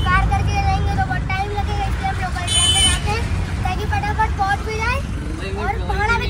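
Auto-rickshaw engine and road noise heard from inside the open passenger cabin as a steady low rumble, with a short high-pitched vehicle horn toot about two and a half seconds in.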